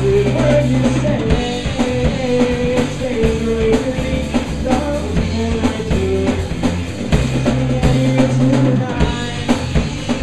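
Live rock band playing an instrumental stretch: electric guitar carrying a wandering melody over a drum kit and sustained low bass notes, with steady drum hits.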